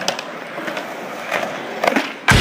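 Skateboard wheels rolling on concrete, with a few sharp clicks over the pavement, and a louder crack near the end as the tail is popped for a trick.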